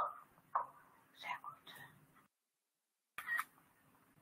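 Short, faint snatches of a person's voice, coming and going, with stretches of dead silence between them and one last brief burst near the end.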